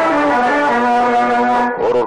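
Programme theme music of held, sustained notes; the lowest note steps down twice in the first second and then holds until shortly before the end.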